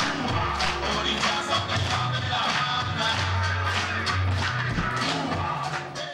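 Music with a steady beat and sustained bass notes.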